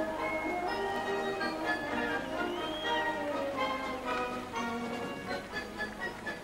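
A military band playing, with held notes changing about once a second, slowly getting quieter.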